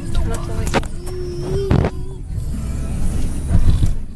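Steady low road rumble inside a moving car's cabin. A couple of sharp knocks come about a second in and just before two seconds.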